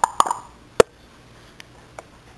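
African grey parrot making a few quick clicks, then a single sharp pop just under a second in.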